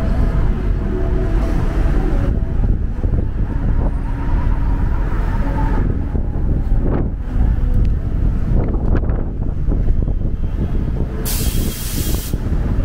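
City street traffic: a steady low rumble of vehicles passing, one swelling past about seven seconds in. Near the end comes a sharp hiss lasting about a second, like a bus's air brakes releasing.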